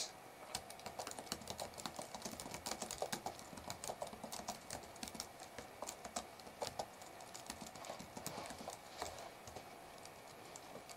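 Computer keyboard being typed on: quick, irregular key clicks that thin out near the end.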